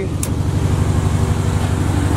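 Box Chevy Caprice's V8 idling steadily. It is running rich while the excess fuel from wet plugs burns off, which the owner expects to clear up as it runs. A brief click comes about a quarter second in.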